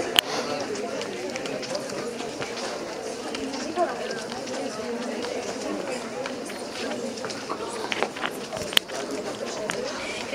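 Indistinct murmur of many voices talking at once, with a few sharp clicks and knocks.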